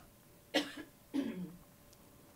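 A man clearing his throat with two short coughs, about two-thirds of a second apart.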